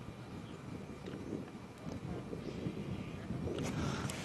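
Quiet outdoor background: a faint low rumble and hiss with no distinct event.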